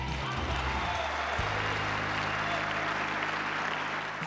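Tennis arena crowd applauding after a point, with a steady backing-music bed underneath from about a second in.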